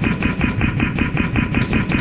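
A short chunk of audio chopped and repeated in a fast stutter loop, about eight repeats a second, as an editing effect.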